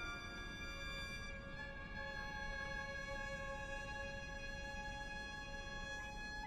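Piano trio of violin, cello and piano playing a slow, quiet passage: a chord enters right at the start, then long steady held notes, with new notes joining about one and a half to two seconds in.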